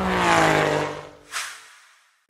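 Logo sound effect: a car engine's rev falling away in pitch and fading, with a short whoosh about one and a half seconds in.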